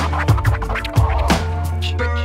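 A hip hop beat with DJ turntable scratching: scratched record cuts glide and stutter over a kick drum and a long, held low bass note.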